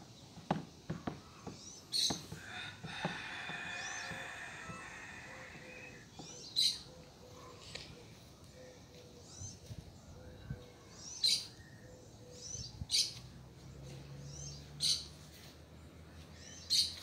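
Small wild birds chirping in short, high calls several times, with a stretch of steadier calling in the first few seconds. A few soft clicks sound in the first three seconds.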